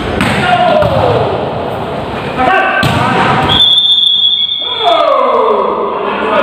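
Volleyball players' voices echoing in a large gym, some calls falling in pitch. A sharp smack of a ball being hit comes near the middle, followed by a steady high tone for over a second.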